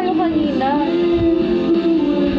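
A woman singing a slow melody over backing music. She glides between notes, then holds one long note through the second half.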